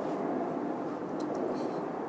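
Steady outdoor background noise, the hum of distant city traffic, with a few faint clicks about a second in.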